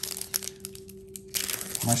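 A foil trading-card pack crinkling and crackling as it is torn open by hand, a rapid run of sharp crackles in the first half that then fades.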